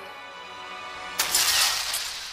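Anime soundtrack with quiet background music, then a little over a second in a sudden loud crashing, shattering sound effect that lasts under a second.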